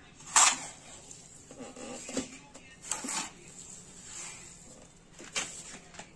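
A trowel scraping up a cement-and-sand mix from a concrete floor and tipping it into a plastic bottle planter: three short scrapes about two and a half seconds apart, the first, about half a second in, the loudest, with fainter shuffling of the mix between them.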